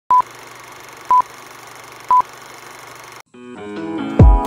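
Film countdown leader sound effect: three short high beeps, one a second, over a steady hiss. The hiss cuts off about three seconds in and music fades in near the end.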